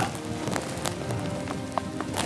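An open hand tapping the hard, concrete-like wall of a termite mound in a few scattered knocks, over background music. The knocks sound hollow, the sign that the mound is not solid inside.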